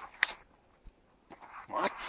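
Burning split-wood campfire giving one sharp crackling pop about a quarter-second in and a faint tick a little later, then a voice begins near the end.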